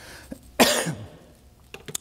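A single cough about half a second in, with a short voiced tail that falls in pitch. A couple of faint clicks come near the end.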